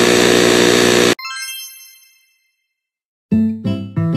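Cartoon sound effects: a loud, harsh blare cuts off about a second in and gives way to a bright ding that rings out and fades. After a short silence, piano notes start near the end in a steady beat.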